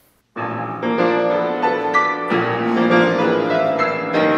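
Grand piano playing chords of classical-style music, starting abruptly about a third of a second in after a brief silence.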